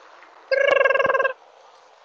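A single short vehicle horn blast, steady in pitch and buzzy, lasting under a second about half a second in.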